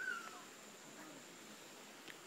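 A single short, faint animal call right at the start, falling in pitch, with only faint outdoor background after it.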